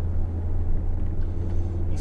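Steady low rumble of engine and road noise inside the cabin of a Mercedes-AMG 43 with a 3.0-litre biturbo V6, cruising at an even pace.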